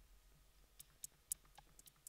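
Faint, sharp electronic clicks from a synthesizer rig, ticking about four times a second from about a second in over near silence, as a sequenced percussive pattern begins.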